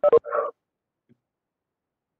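A short, loud burst of sound in the first half-second, then the audio goes completely dead: a video-call audio feed dropping out during a technical problem on the lecturer's side.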